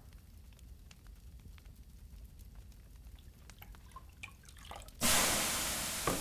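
Scattered drips and small ticks in a quiet sauna, then about five seconds in a sudden loud hiss as water is thrown onto the hot sauna stove stones, slowly fading.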